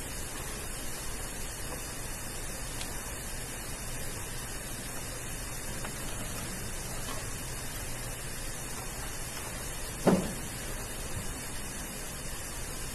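Steady hiss of room tone and recording noise, with a single short dull knock about ten seconds in.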